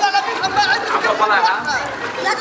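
Children's voices chattering and calling out, several high-pitched voices overlapping.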